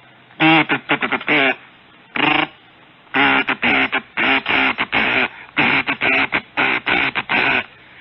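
A man vocally imitating Morse code, sounding out a string of V's and other characters as short and long sung syllables, 'di-di-di-dah'.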